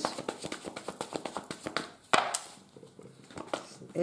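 A deck of oracle cards being shuffled and handled by hand: a rapid run of light card clicks, then a single louder tap about two seconds in, followed by a few softer clicks.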